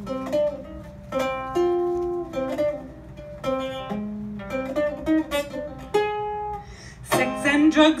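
Ukulele played live, separate plucked notes and chords ringing out one after another, with a woman's singing voice coming in near the end.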